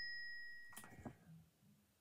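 The bell ring of a cash-register 'ka-ching' sound effect, dying away over the first second, then a couple of faint soft clicks about a second in.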